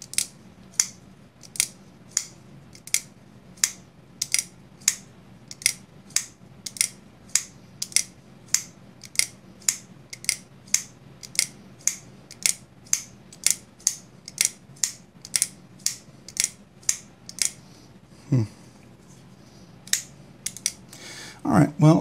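Civivi Vision FG folding knife's Superlock blade flicked open and shut over and over, sharp metallic clicks about two a second that stop a few seconds before the end. The freshly oiled lock is sticking in its hole, which the owner finds bothersome.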